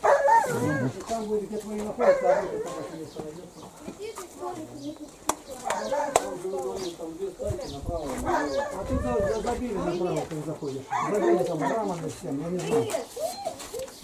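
Indistinct talk of several people, with a dog barking among the voices.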